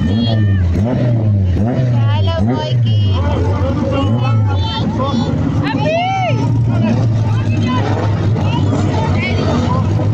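Engines of race cars rolling slowly past in a line, their low note sliding up and down in the first few seconds and then running steadily, with voices over them.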